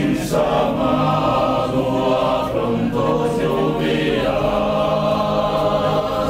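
Sardinian male choir singing a cappella, several voices holding sustained chords that change about every second.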